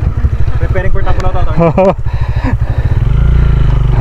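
Dirt bike engine idling with a quick low pulse. About three seconds in, the revs rise a little and it settles into a steadier drone as the bike moves off.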